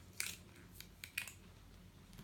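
Light handling noises: a few short clicks and rustles as a plastic ruler is moved on and off notebook pages, the sharpest about a quarter second in.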